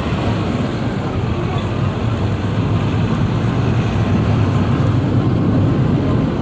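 Steady low rumble of a narrow-gauge passenger coach rolling as the train starts away, heard from inside the coach.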